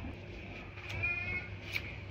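A brief high-pitched animal cry about a second in, lasting under half a second, over faint low background noise.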